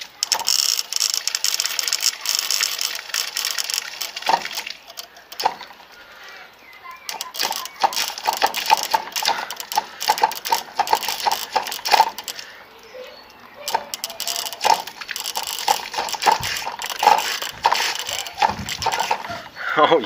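Homemade dancing water speaker, a solenoid valve on a garden hose driven by an amplifier, clicking and rattling in quick irregular runs as it pulses water in time with music.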